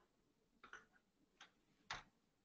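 Near silence broken by three faint, short computer mouse clicks, the last one near the end the loudest.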